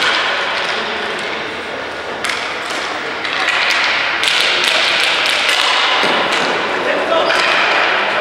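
Ball hockey play: sticks clacking and striking the ball in sharp clicks, over players' shouting voices that grow louder about three seconds in.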